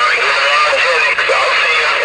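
A weak voice transmission coming through a CB radio's speaker, buried in heavy static hiss and hard to make out. The signal keys up and drops off abruptly.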